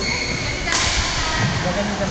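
Badminton racket striking a shuttlecock once, a sudden sharp hit with a swish about three-quarters of a second in.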